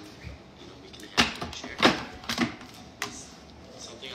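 A few sharp knocks and clacks as a plastic blender jar is handled and set onto its base on a kitchen counter.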